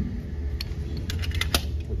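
A handful of short metallic clicks and rattles of a pistol magazine being handled, the sharpest about one and a half seconds in, over a steady low hum of range ventilation.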